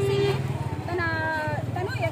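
A woman talking over a steady low engine rumble that runs unbroken beneath her voice.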